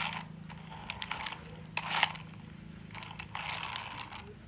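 Plastic toy tanker truck run over rough concrete: its wheels and mechanism rattle and click, with short scrapes, the loudest about two seconds in.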